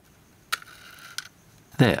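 Snap-off utility knife blade cutting a warranty seal sticker on a Microdrive: a sharp click, a short faint scrape of the blade through the label, and a second click as it finishes.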